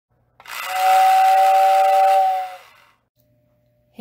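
A steam-style train whistle giving one steady, breathy two-note blast of about two seconds, starting about half a second in and then dying away.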